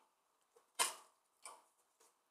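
Two brief handling sounds of a Match Attax trading card: a sharp one just under a second in that dies away quickly, and a much fainter one about half a second later.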